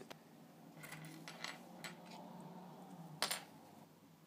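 Small metal electronic parts being handled on a workbench: a few light metallic clicks and clinks, the loudest a little after three seconds in.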